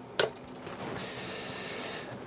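A power plug pushed into an outlet of a PS Audio Power Plant 12 AC regenerator, giving one sharp click about a fifth of a second in. A steady hiss follows and grows a little about a second in.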